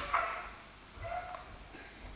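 Quiet lecture-room tone with a faint, brief tonal sound about a second in.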